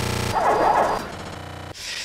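Harsh, heavily distorted glitch sound effects. A loud buzzing tone opens, a noisy burst follows about half a second in, a quieter steady buzz comes in from about a second in, and a short hiss closes it.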